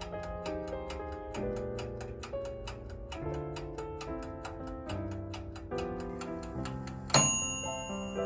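Light background music with a steady ticking beat. About seven seconds in, a single loud bell ding rings on: the toaster oven's timer signalling that baking is done.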